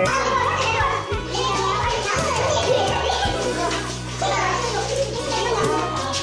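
Background music with sustained low notes over the overlapping chatter of a roomful of students talking at once.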